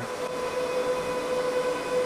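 HPE DL560 Gen10 rack server's cooling fans running steadily at light load: a constant whine over an even hiss of moving air.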